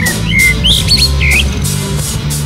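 Rock band jamming live, with bass guitar and drums holding a low groove. A run of short, high, squealing chirps sounds over it in the first second and a half.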